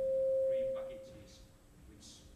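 Microphone feedback through a lecture hall's sound system: a steady single-pitched ringing tone that swells, then fades away about a second in.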